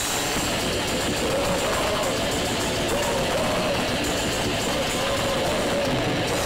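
Death metal/grindcore band playing live: heavily distorted guitars, bass and drums in one continuous loud wall of sound, with a wavering vocal line over it.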